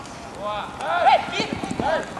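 Footballers shouting short calls across the pitch, a quick string of brief cries that rise and fall in pitch, starting about half a second in and loudest just after one second.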